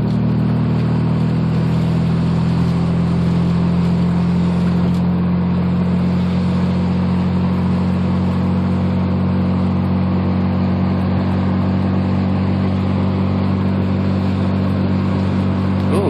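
A naturally aspirated 1987 Mazda RX-7's two-rotor 13B rotary engine, running through headers and straight pipes, drones steadily at constant revs while cruising, heard from inside the cabin.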